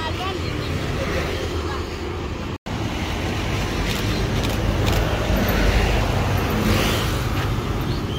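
Road traffic noise from vehicles passing along a road, a steady rumble that swells in the second half, with a brief complete dropout about two and a half seconds in.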